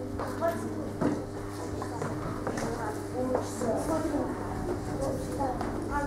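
Low chatter of children's voices over a steady electrical hum, with a few short taps of chalk on a blackboard as numbers are written.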